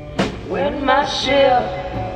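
Blues-rock song: a sharp drum hit just after the start, then a voice singing a drawn-out, bending line over the band.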